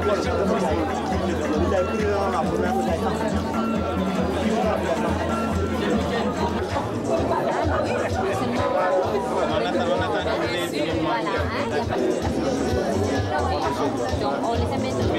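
Many people chatting at once over background music with a steady bass line.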